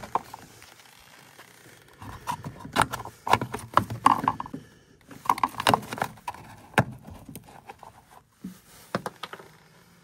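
Irregular clicks, taps and scrapes of a plastic measuring cup being handled and set down on the sheet-metal floor of a furnace cabinet. They are busiest in the middle and trail off near the end.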